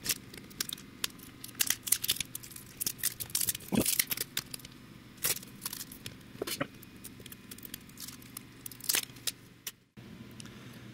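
Copper circuit board being pried and peeled off double-sided sticky tape on a CNC bed: irregular crackling, ticking and tearing clicks as the tape lets go, over a faint steady hum.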